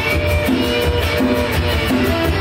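Live band playing an instrumental passage: electric guitar and strummed acoustic guitar over a djembe played by hand, with a steady rhythm and no singing.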